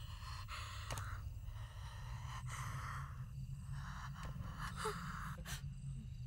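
Faint, uneven breathing with soft gasps, a breath about every second, over a low steady hum.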